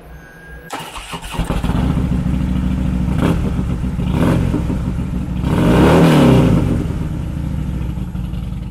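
2017 Harley-Davidson Dyna Fat Bob's 103 cubic inch V-twin, fitted with Vance & Hines slip-on mufflers, starting up about a second in and then being revved: two short blips of the throttle around three and four seconds, a longer, higher rev around six seconds, then settling back toward idle.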